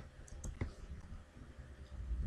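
Two faint keystrokes on a computer keyboard, close together about half a second in.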